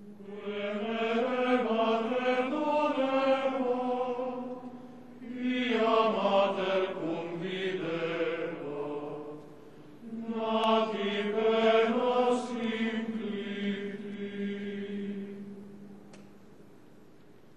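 Male choir singing a slow liturgical chant in three phrases with short breaths between them. The last phrase ends on a long held note.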